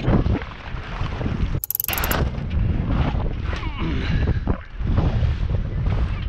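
Strong wind buffeting the camera microphone aboard a small sailboat, a steady low rumble. A short burst of high-pitched noise cuts in about two seconds in.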